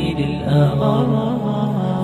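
Male nasheed sung in Arabic by layered voices without instruments, the melody gliding and held over a steady low vocal drone.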